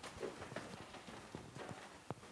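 Faint, irregular footsteps and light knocks, about two or three a second, with papers handled as people step about and stand up.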